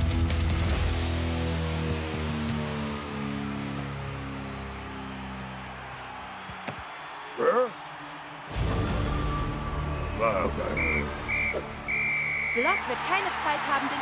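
Dramatic cartoon background music, then a referee's whistle blown twice short and once long to end the match, followed by a crowd cheering.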